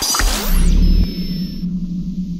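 Synthesized logo-intro sound design: a whoosh-like hit at the start, then a deep bass boom about half a second in that settles into a steady low hum with thin, high, steady tones over it.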